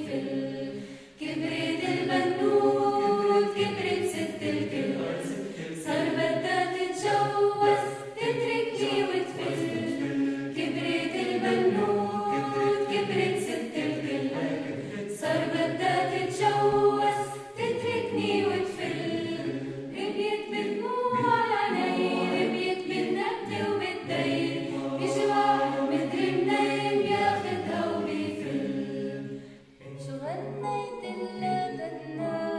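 Mixed choir of men and women singing a cappella in several voice parts, in phrases with a short break about a second in and another just past halfway; the phrase dies away just before the end.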